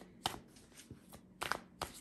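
Tarot cards being shuffled and handled by hand, with a few sharp card snaps: a pair about a quarter second in and a few more around a second and a half.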